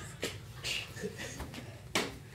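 A few faint, light taps and clicks from playing cards being handled and thrown, the sharpest tap near the end.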